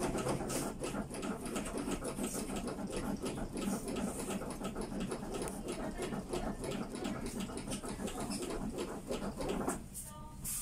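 CPR training manikins being given chest compressions by two trainees at once: a fast, continuous run of clicks and knocks from the manikins' chests.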